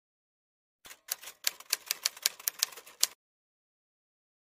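Typewriter sound effect: a quick run of about a dozen key clicks over two seconds.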